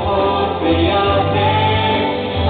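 A woman and a man singing a duet into handheld microphones, amplified through a PA, over a sustained musical accompaniment.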